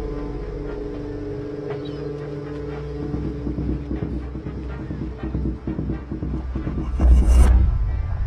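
Tense film score with sustained low tones, turning to a pulsing rhythm midway, and a loud burst about seven seconds in.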